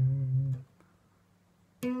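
Solid-body electric guitar picking out single notes of a major-seventh chord shape high on the neck: a held low note rings until about half a second in and is damped, then a short quiet, and a new note is plucked near the end.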